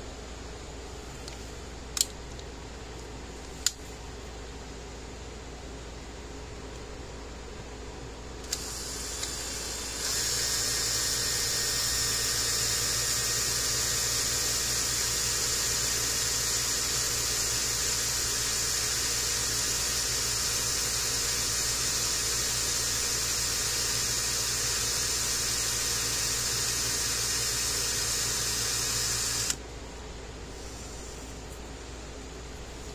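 Cordless drill with a small bit boring through the solid plastic of a fence tester's ground-probe handle. Two sharp clicks come first. The motor starts about eight seconds in, runs slower for a second or so, then runs steady for about twenty seconds and cuts off just before the end.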